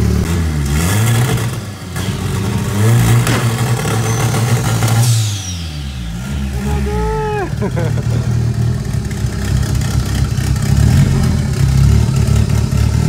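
Turbocharged VW Voyage engine with a straight-through exhaust, warming up: it runs at idle and is revved in blips, held up for about two seconds near the middle, then dropping back. A high whistle falls away as the revs drop about five seconds in.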